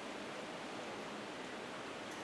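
Low, steady hiss of hall room tone and recording noise in a pause in speech.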